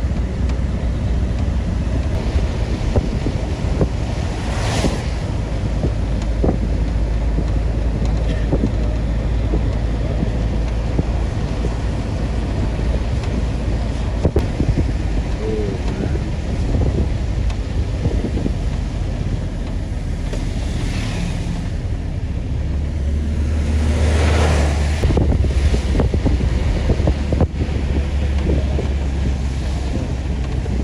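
Steady low rumble and rushing noise of a vehicle driving on a wet road, with wind buffeting the microphone. A few louder swells of rushing noise come and go, one a few seconds in and a longer one about three quarters of the way through.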